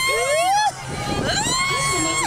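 A rider on a spinning teacup ride squealing: two long, high-pitched held cries, one at the start and another about a second later.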